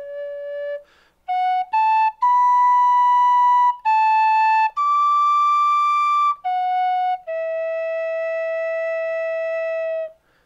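Tin whistle playing a slow melody in single, cleanly held notes, with a brief pause for breath about a second in. The line climbs to higher notes in the middle and settles on a long held note near the end.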